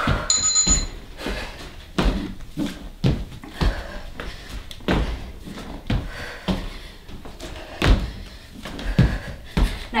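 Repeated dull thuds of hands and feet landing on a floor mat during weighted burpee hop-overs, coming in irregular clusters about every half second to a second. A two-tone interval-timer beep sounds in the first second.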